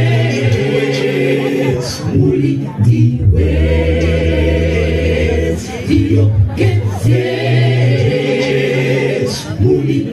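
Mixed choir singing a cappella in close harmony over a strong bass line, with a male lead on a microphone in front. Held chords come in phrases of a few seconds, with short breaks between them.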